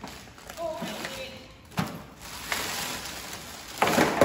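Plastic bags rustling and packed items being handled while a suitcase is unpacked, with a couple of light knocks as things are set down or lifted out.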